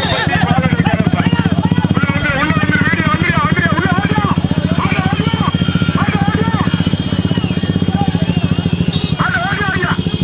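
Motorcycle engine running steadily, with many people shouting and whooping over it.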